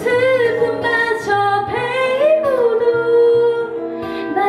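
A woman singing a Korean ballad live into a microphone, holding long, wavering notes over soft guitar and keyboard backing.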